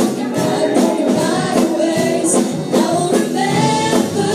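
Live praise and worship band: several voices singing the melody together over drum kit, bass, electric guitar and keyboard, with a steady beat of about three drum strokes a second.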